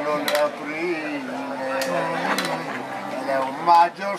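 Piano accordion playing soft held chords that change a couple of times, under people talking, with a few sharp clicks.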